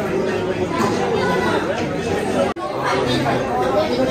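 Many voices talking at once in a large indoor hall, with a brief dropout about two and a half seconds in.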